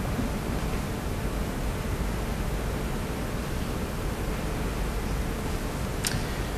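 Steady, even hiss of room tone, with no speech.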